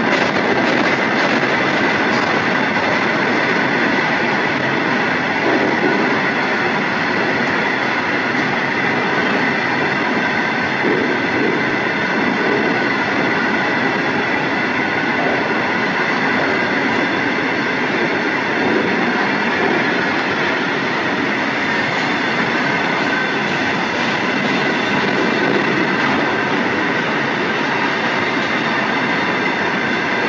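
Freight train's long rake of bogie hopper wagons rolling past close by, a steady, unbroken noise of wheels running on the rails.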